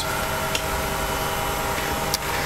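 Steady hum of running laboratory equipment, with several faint steady tones.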